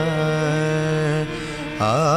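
Carnatic-style devotional music: a long note held steady over a sustained background. It dips briefly past the middle, and just before the end a new phrase begins with ornamented, wavering pitch.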